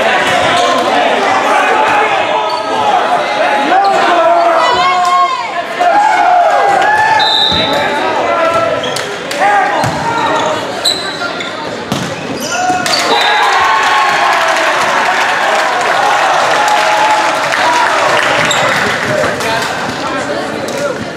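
Volleyball play on a hardwood gym court: the thuds of the ball being struck and bouncing, over players and spectators shouting and calling out, echoing around the gym.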